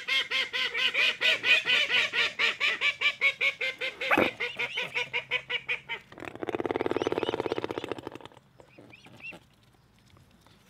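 Waterfowl honking in a fast, unbroken run of calls, several a second, with a single knock about four seconds in. Around six seconds in the calls give way to a harsher buzzing rattle lasting about two seconds, followed by a few faint calls.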